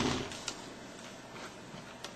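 Low room noise with one small click about half a second in and a few fainter ticks, from the serial cable being handled at the laptop's port.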